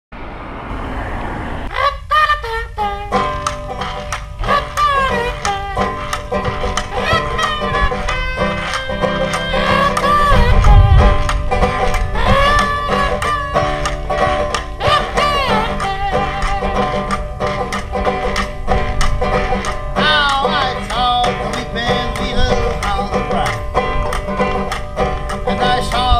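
A brief rushing noise, then about two seconds in a banjo-led bluegrass-style instrumental intro starts: plucked banjo with a melody line that bends in pitch.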